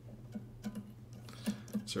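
A few faint, scattered clicks and taps as a capo is clamped and adjusted on an acoustic guitar's neck at the fifth fret.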